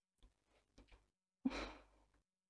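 Near silence broken by a single short, soft breath, a sigh, about one and a half seconds in.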